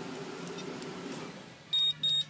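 A faint steady hum, then near the end a short, high electronic beep from the two-way remote-start key fob, with a second beep following right after, confirming the remote shut-off command.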